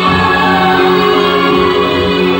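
Live band music, loud and amplified, a full held chord with voices singing over it.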